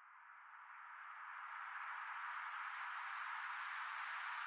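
An edited white-noise riser, a hissing sweep that swells steadily louder and brighter before levelling off in the second half, used as a transition building into music.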